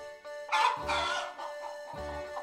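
A rooster crows once over soft background music. The crow starts about half a second in and lasts about a second.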